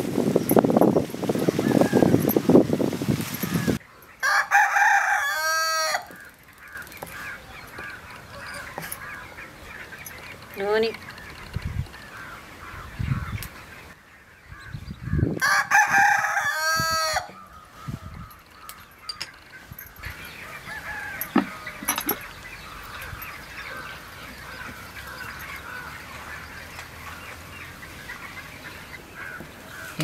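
Leaves and stems rustling loudly as nalleru (veldt grape) stems are pulled from the bush, stopping about four seconds in. Then a rooster crows twice, about four seconds in and again about fifteen seconds in.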